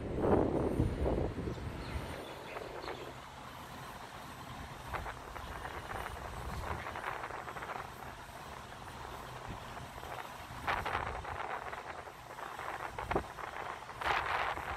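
Street traffic heard from high above, a steady low rumble of passing vehicles, with wind buffeting the microphone at the start and again from about ten seconds in.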